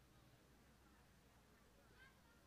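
Near silence: faint open-air room tone with a low, steady hum.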